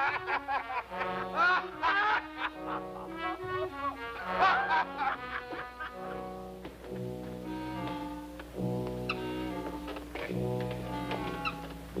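Orchestral film score with brass, playing a tune of short pitched notes over low held bass notes.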